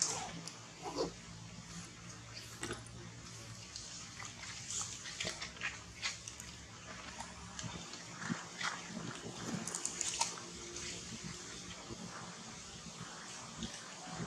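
Soft, short whimpering squeaks from a nursing baby macaque, scattered irregularly with small clicks and rustles between them.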